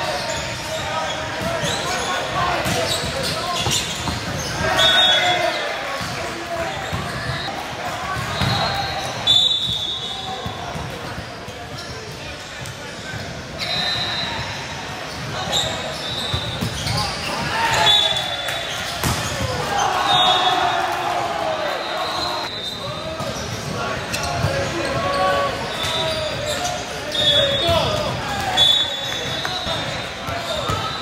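Indoor volleyball rallies in a large, echoing gym: players and spectators shouting and calling, sharp thuds of the ball being hit, and short high squeaks of sneakers on the hardwood court, heard about ten times.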